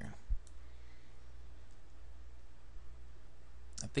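Steady low hum, with a soft low thump shortly after the start and a faint computer-mouse click about half a second in.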